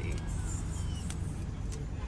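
Low steady rumble of a car heard from inside its cabin, with faint voices and a few light ticks over it.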